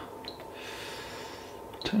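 A person's soft breath, an even hiss of air, in a pause between words. The spoken word "ten" begins near the end.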